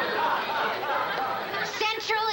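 Sitcom studio-audience laughter, a dense wash of many voices at once, thinning as one voice starts speaking near the end.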